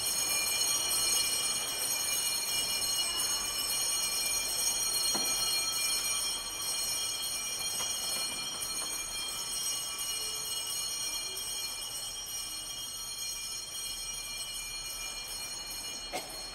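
Small altar bells ringing continuously in a high, shimmering peal for the benediction with the monstrance, slowly fading toward the end.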